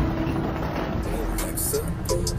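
Street noise with a steady vehicle engine hum, which stops shortly before the end.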